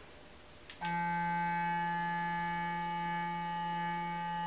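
Clarisonic sonic face brush with a foundation brush head switched on with a faint click about a second in, then running with a steady electric hum and a thin whine above it.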